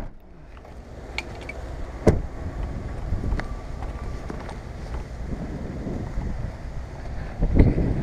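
Wind buffeting a head-mounted action-camera microphone as a steady low rumble. A sharp knock comes about two seconds in and another thump near the end.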